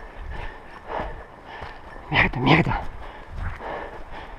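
Footsteps crunching through dry leaf litter and brush at a fast walk, in an irregular run of thuds and rustles. Two louder sounds come close together a little over two seconds in.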